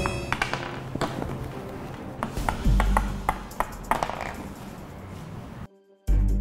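A small plastic toy hammer tapping the plastic ice blocks of a penguin ice-breaking game: a scattered series of sharp taps and knocks, with background music under them. The sound cuts out briefly near the end.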